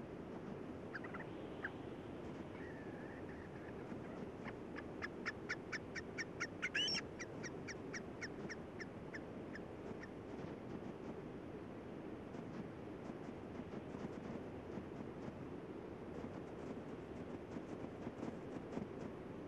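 An animal's high, short chirps repeated about four a second, with one louder wavering call in the middle of the run, over a steady low hiss.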